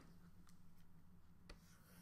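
Near silence: a faint steady room hum with a few light taps and scratches of a stylus on a tablet as an annotation is drawn, with a click about half a second in and another about a second and a half in.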